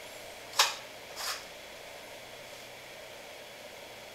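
A 100-watt light bulb being screwed into its socket to add load: a sharp click about half a second in and a softer scrape just after a second. Steady fan noise runs underneath.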